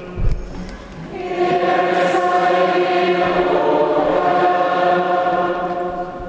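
Church congregation singing a hymn together, coming in about a second in and holding long, steady notes. A short low thump sounds just before the singing starts.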